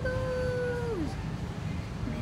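A voice holding one steady note for about a second, then sliding down in pitch as it stops, over a steady low rumble.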